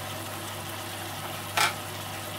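Honey melting and bubbling into a caramel syrup in a roasting pan, a steady sizzle, with one short louder hiss about one and a half seconds in.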